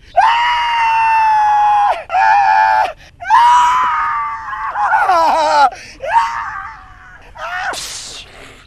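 A man wailing in despair in about five long, high, drawn-out cries, the first held steady for nearly two seconds and a later one sliding down in pitch at its end.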